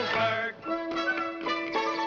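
Male voices finish a sung phrase about half a second in, then a film-musical orchestra plays an instrumental dance break: a long held note under quick, short notes.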